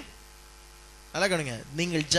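A steady low electrical hum, then a man's speaking voice starts again a little past halfway through.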